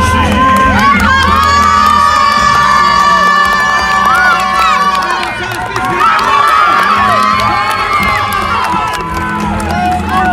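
Large crowd cheering and shouting, many voices overlapping, with long held yells rising in two swells.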